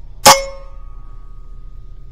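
A single shot from an Evanix Rainstorm SL .22 PCP air rifle: one sharp crack about a quarter second in, followed by a metallic ring that fades over about a second and a half.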